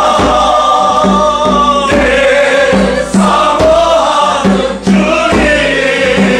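Gospel worship song: a choir of voices singing held notes over a steady beat.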